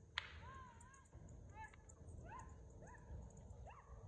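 A single sharp bullwhip crack just after the start, with a short echo trailing off after it. Faint, repeated rising-and-falling calls carry in the background.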